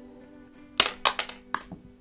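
Four sharp clicks and knocks in quick succession about a second in, from a handheld makeup mirror and eyebrow pencil being handled and lowered, over soft background music.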